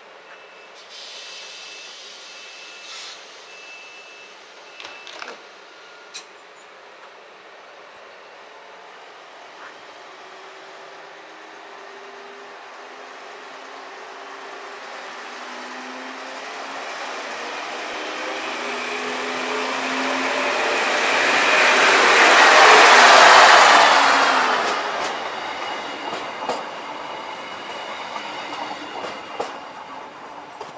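Diesel multiple-unit passenger train pulling out and accelerating past: a few short high beeps near the start, then the engine note and wheel-on-rail noise build steadily to a peak as the train goes by, about three quarters of the way in, and fade as it leaves.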